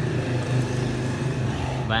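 A steady low mechanical hum, like a running engine, with no other event standing out over it.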